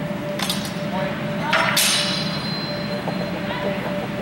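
Longsword blades clashing in a fencing bout: a light tap about half a second in, then one loud clash just before the middle that leaves a high metallic ring fading over a second or so.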